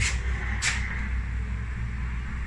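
Steady low rumble and hiss of outdoor background noise, with one brief sharp noise about two-thirds of a second in.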